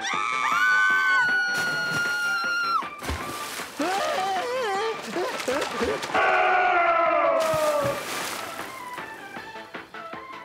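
A cartoon man's long held scream, then wavering, warbling cries and a second falling wail, over rhythmic background music.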